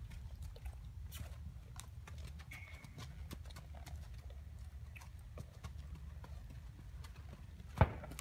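A mustang's hooves stepping: light, irregular clip-clops over a low steady rumble, with one sharper knock near the end.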